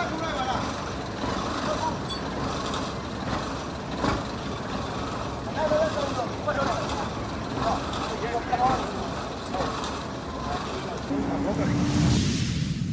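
Military truck engine running at idle, a steady low rumble, under indistinct voices talking.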